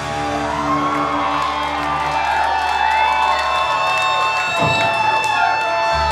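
A live punk rock band ends a song on long held chords from amplified electric guitars and bass, while the crowd cheers and whoops. A steady high tone rings through the second half, and the low notes drop out partway through.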